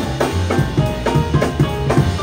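Live jazz band playing: drum kit with regular snare and bass drum strikes over walking upright bass notes, with electric guitar, piano and trumpet notes above.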